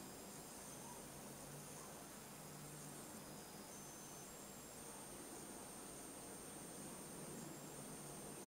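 Faint steady hiss of room tone and recording noise, with a faint high whine and low hum underneath; no distinct sound events.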